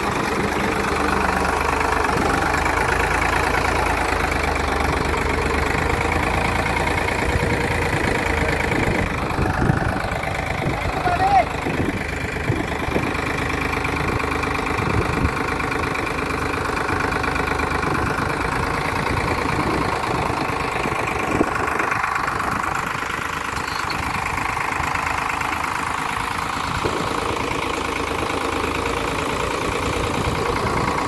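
Diesel tractor engines idling steadily at close range, with a few brief knocks.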